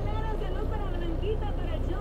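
Semi-truck diesel engine running steadily as a low drone, heard from inside the cab while the truck rolls slowly.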